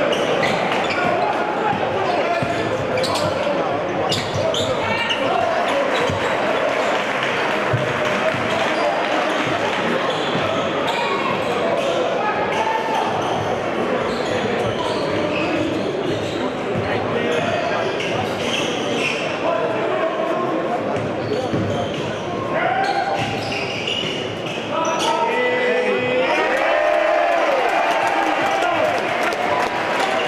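A basketball being dribbled on a hardwood gym floor under the constant chatter and shouting of a packed crowd in a large echoing hall. The crowd noise swells over the last few seconds.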